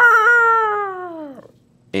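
A man imitating a cat's caterwaul with his voice: one long drawn-out yowl that slides down in pitch and trails off about a second and a half in.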